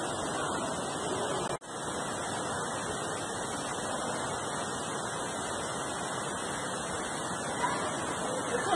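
Steady rushing background noise with no distinct events, broken by a brief dropout about one and a half seconds in where the recording cuts.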